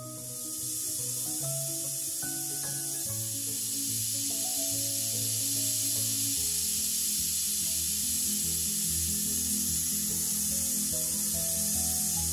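Aluminium pressure cooker on a gas burner venting steam through its weighted whistle valve: a loud, steady hiss. This is one of the three whistles counted to time the rice. Background music plays underneath.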